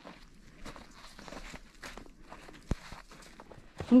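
Footsteps in melting, slushy snow on a steep downhill trail, with trekking poles planted alongside. There is one sharp tap or click a little past halfway.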